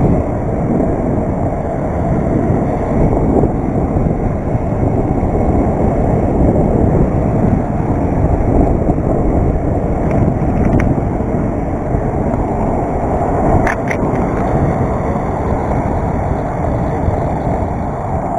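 Steady wind rush on the camera microphone and tyre rumble from a BMX bike rolling over asphalt, with a couple of faint clicks near the end.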